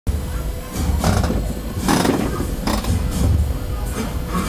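Fairground din at a ride: music and voices mixed with a constant low rumble and a few short gusts of noise.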